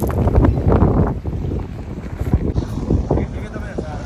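Wind buffeting the microphone, a loud low rumble coming in irregular gusts, strongest in the first second or so.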